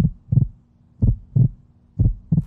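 A heartbeat sound effect: double low thumps, lub-dub, about one beat a second, over a faint steady hum. It is a suspense cue running under the decision countdown.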